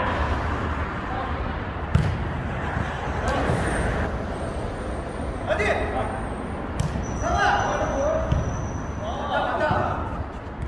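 Jokgu ball being kicked during rallies, with sharp kicks about two seconds in and again near seven seconds, and players shouting calls to each other between touches, over a steady low rumble.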